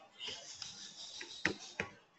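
Faint clicks of a computer mouse, two sharper clicks about a second and a half in and near the end, over a low room hiss.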